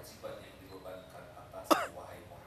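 A single loud cough close to the microphone near the end, over faint voices in the background.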